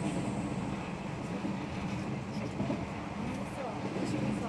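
Steady running noise inside a JR 117 series electric train car at speed: a continuous rumble of wheels on rail, with voices in the car over it.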